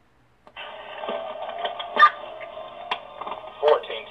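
Police two-way radio traffic: a narrow, tinny radio channel opens about half a second in, with garbled voice, crackle and a few sharp clicks, the loudest about two seconds in.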